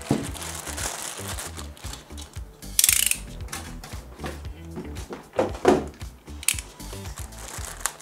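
Background music with a steady beat. Over it come the clicking of a utility knife's blade being pushed out and the crinkle of plastic wrap on the speakers, with a loud high rustle about three seconds in.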